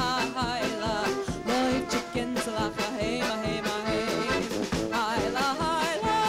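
Klezmer band playing live: a woman singing with a wide vibrato over tuba, trumpet and fiddle, with a steady beat.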